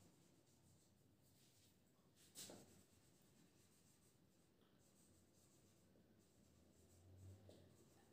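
Near silence with the faint scratch of a marker writing on a whiteboard, and a soft click about two and a half seconds in.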